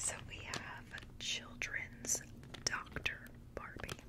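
A woman whispering close to the microphone, with a few soft clicks and crinkles from a plastic toy bag being handled.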